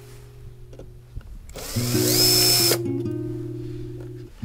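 Bosch cordless drill-driver spinning up with a rising whine and running for about a second before stopping abruptly, working a screw on a classic Mini's headlight rim. Acoustic guitar music plays underneath.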